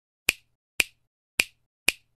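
Four sharp finger snaps, about half a second apart, in an even beat.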